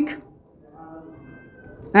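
A marker squeaking faintly on a whiteboard as a word is written: a thin, steady whine lasting a little over a second. A man's voice trails off just after the start and comes back near the end.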